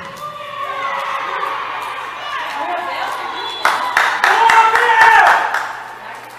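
Shouting voices at a football pitch, rising into a loud burst of shouts and cheering about four seconds in that lasts over a second before dying down.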